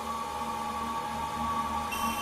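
Background music: an ambient track of steady held tones with no beat.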